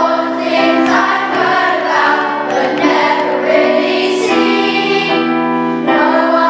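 Children's choir of eleven- and twelve-year-olds singing a Christmas song, with long held notes.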